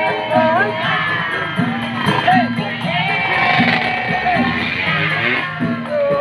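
Live street procession music: brass gongs strike a regular low beat under a wavering melody and singing. Crowd shouting swells up in the middle.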